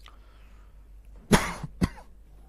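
A person coughing twice: a longer, loud cough about a second and a quarter in, then a short second cough half a second later.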